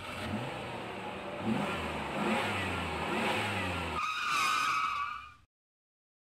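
Vehicle engine revving in repeated rising sweeps. A higher wavering tone joins about four seconds in, and the sound cuts off suddenly about a second later.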